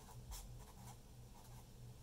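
Felt-tip marker writing on notebook paper: a few faint, short strokes as numbers are written out.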